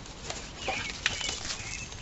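Rustling and a few sharp clicks of a flimsy black plastic seedling cell tray being handled as a lettuce transplant is pulled from its cell, with faint bird chirps.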